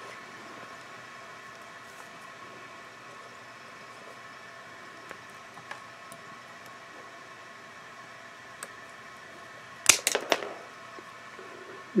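A bicycle brake cable cut with cable cutters: a sharp snap followed by a couple of quick clicks about ten seconds in. Before it, a long stretch of faint steady hum with a few light handling clicks.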